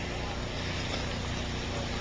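Steady background hiss with a faint low hum, the noise floor of an old speech recording, heard in a pause with no one speaking.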